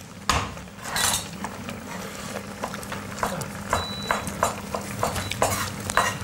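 Metal spoons clinking against a pot as food is scooped out and tasted: a string of light, irregular clicks.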